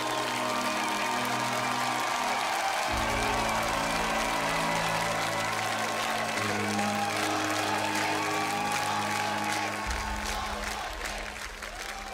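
Audience applause over soft background music of slow, sustained chords that change every three seconds or so. The applause thins out near the end.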